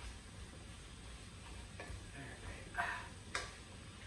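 Wooden spatula stirring mushrooms in a stainless steel sauté pan: quiet scraping with a few light clicks against the pan, the sharpest one about three and a half seconds in.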